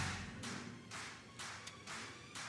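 Faint chewing on a bite of smoked pork rib: a few soft, irregular mouth noises.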